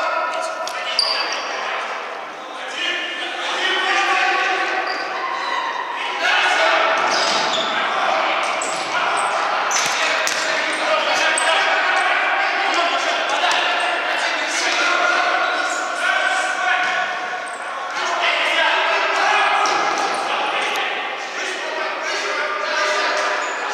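Futsal ball kicked and bouncing on a wooden sports-hall floor, sharp thuds that echo in the large hall, with players shouting to each other throughout.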